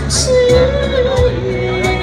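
A woman singing a Chinese song live into a microphone over electronic keyboard accompaniment with a steady beat. She holds one long note, then drops to a lower held note about halfway through.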